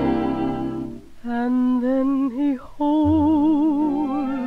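1939 dance-band recording: a string section's held chord ends about a second in, then a woman's voice carries the melody without words, with a wide vibrato. After a brief break it settles on a long held note over a low accompaniment.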